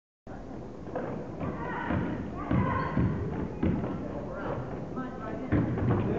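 A brief dropout to silence at the very start, then a basketball game in a gym: irregular thuds of the ball and feet on the hardwood floor, under the voices of players and spectators.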